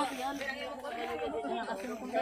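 Several people talking at once at a distance from the microphone, overlapping chatter with no single clear voice.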